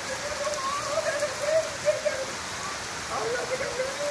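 Heavy rain falling steadily, a constant hiss of drops on the ground, with a person's voice faintly wavering under it in the first half and again near the end.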